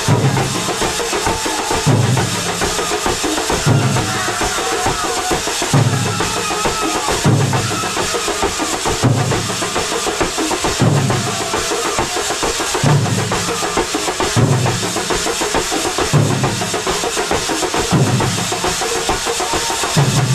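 Thambolam percussion ensemble playing a loud, driving drum rhythm. Deep bass-drum figures repeat about every two seconds under busy, continuous higher drum and cymbal hits, with a faint wavering melody above.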